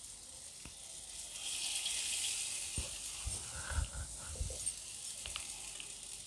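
Urad dal bhalle deep-frying in hot oil in a kadhai: a steady sizzle that swells about a second and a half in. The oil spits a little because of the water on the cloth and hands used to shape the batter. A few soft low thumps of handling come in the middle.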